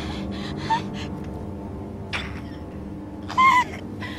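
A person gasping and whimpering in three short vocal breaths, the last and loudest one near the end, over a faint steady low drone.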